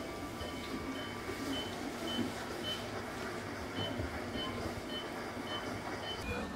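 Short, high electronic beeps repeating about twice a second from a medical machine in the dialysis room, with a brief pause near the middle, over steady low machine noise.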